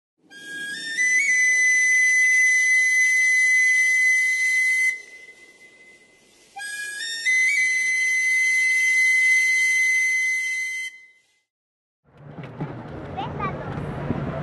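A high, whistle-like tone held for about four seconds, sounded twice with a short pause between; each note starts a step lower and rises to its held pitch. About twelve seconds in, outdoor crowd ambience begins.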